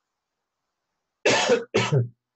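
A man coughing twice into his fist, two short coughs near the end.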